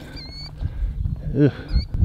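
Birds giving thin, high chirping calls twice, once at the start and once near the end, over a low rumble.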